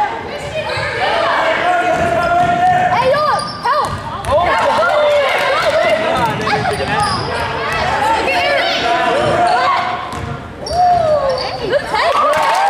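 Basketball dribbled on a hardwood gym floor, with spectators and players shouting throughout in the gymnasium.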